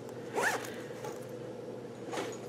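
A zipper pulled once in a short stroke about half a second in, over a faint steady hum.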